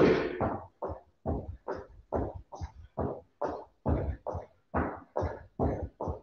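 A person doing small two-footed hops forward and back on a thin mat: a short, soft landing sound repeats regularly, about two to three times a second.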